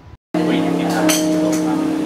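Grand piano music begins abruptly just after a brief dropout, with held notes ringing steadily, over some voices in the room.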